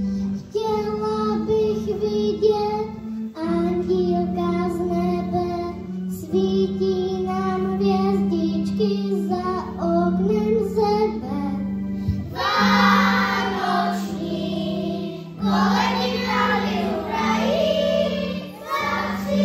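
A group of young children singing a Christmas song together over a steady held accompaniment. The singing grows louder and fuller in two stretches past the middle.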